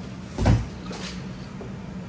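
A single dull thump about half a second in, as a large cardboard panel from a shipping crate is dropped or set down on the floor, over a steady low background hum.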